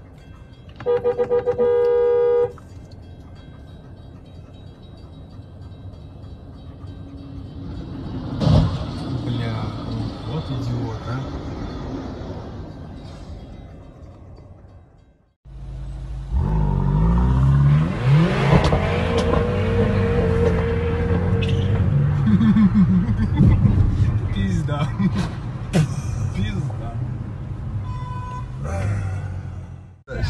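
A car horn sounds in one long blast about a second in, over steady traffic noise. About halfway through, the sound cuts and gives way to louder engine and road noise heard from inside a car.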